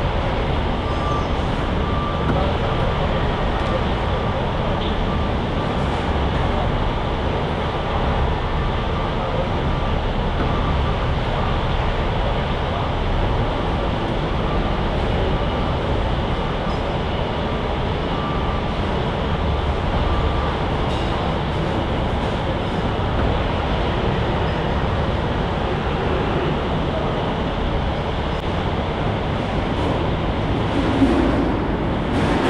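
Heavy machinery running steadily, with a faint thin whine for the first two-thirds.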